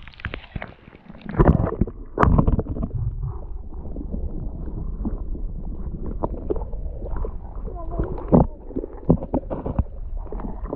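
Muffled underwater sound from a camera submerged in a small minnow pond: a steady low rumble of moving water with several dull knocks and thumps, the loudest about one and a half and two seconds in and again near eight seconds.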